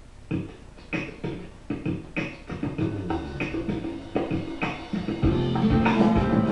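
Several nylon-string classical guitars strumming chords together in a steady rhythm, about two strums a second. The playing grows louder and fuller about five seconds in.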